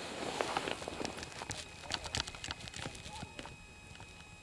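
Chairlift haul rope and chair grip clattering over a lift tower's sheave wheels: a run of irregular clicks and knocks that thins out about three and a half seconds in.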